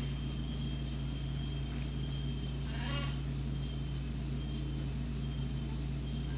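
Steady low hum of background noise, with one brief, faint high-pitched sound about three seconds in.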